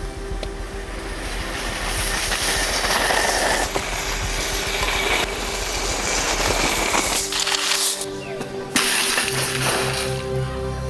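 A shopping trolley's wheels rattling along an asphalt road as it rolls, a rushing clatter that builds over several seconds and breaks off abruptly about seven seconds in, under background music.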